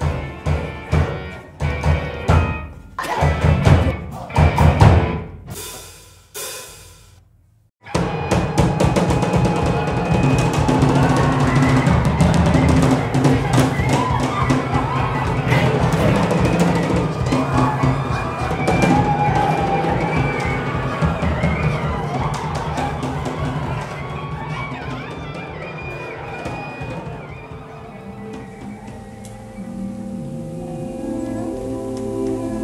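Experimental live music led by drums. For the first seven seconds or so there are separate loud percussive hits, then a sudden cut to silence, then a dense stretch of drumming with voices over it that slowly grows quieter.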